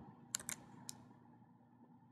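A few computer keyboard keystrokes: a quick cluster of clicks, then one more just under a second in, followed by faint room hiss.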